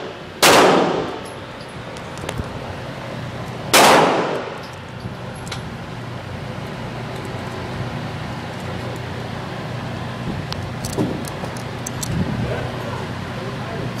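Two .22 pistol shots about three seconds apart, each with an echo in the indoor range. A steady low hum follows, with a few light clicks near the end.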